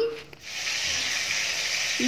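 Pomfret frying in hot oil: a steady sizzle that starts about half a second in.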